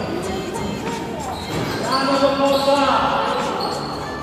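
A basketball bouncing on a gym floor during play, with players calling out.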